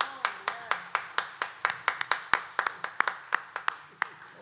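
Hands clapping in applause, a steady run of about four claps a second that stops shortly before the end.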